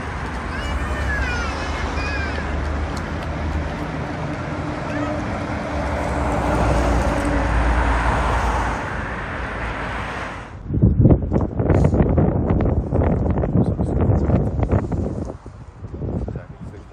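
Street traffic with wind buffeting the microphone, a steady noise with a low rumble. About ten seconds in it cuts off suddenly and is followed by indistinct voices of people close by.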